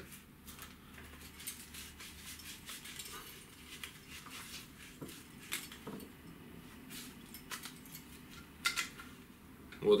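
Faint clicks and scrapes of a Flagman Mascot feeder rod's reel seat being worked by hand and pulled out with difficulty, a tight fit. A couple of sharper clicks come about halfway through and near the end.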